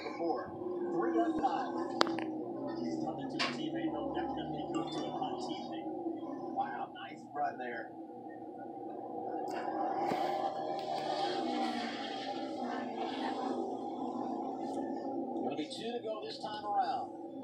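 A NASCAR race broadcast playing from a television's speakers in a small room: commentators talking over the steady drone of the race cars' engines.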